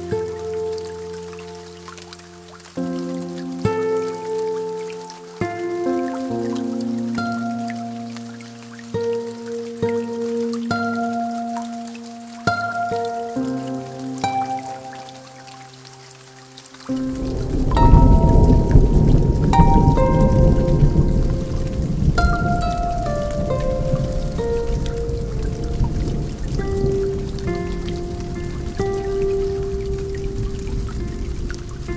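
Slow lofi music of held, soft keyboard notes over rain sounds with scattered drips. About seventeen seconds in, a loud, low rumble of a thunderstorm sets in and continues under the music.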